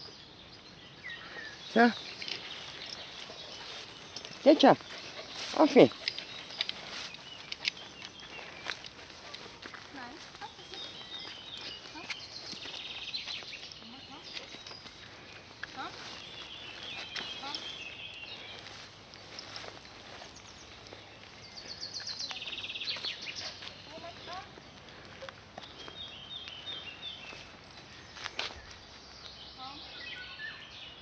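Outdoor ambience of a dog walk through long grass: rustling and steps through the vegetation. In the first six seconds there are three short, loud vocal sounds that fall in pitch, and later birds chirp off and on.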